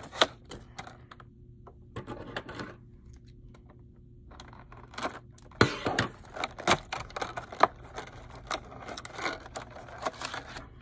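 Plastic swimbait packaging being handled and opened by hand: irregular clicks, crinkles and scrapes, sparse in the first few seconds and busier from about halfway through.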